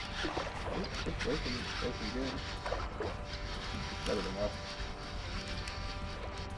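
A baitcasting reel being cranked while a fish is fought: scattered light clicks over a steady hum, with faint muffled voices at times.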